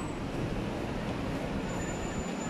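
Steady street traffic noise, a continuous low rumble, with a faint high whine coming in near the end.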